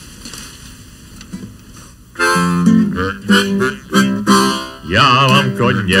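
A man's voice singing a Czech folk song, accompanied by acoustic guitar, starting about two seconds in after a quiet pause.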